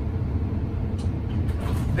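A steady low rumble, with a few faint knocks of bags being handled, about a second in and again shortly after.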